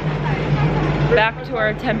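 A bus engine idling with a steady low hum, and a woman talking over it in the second half.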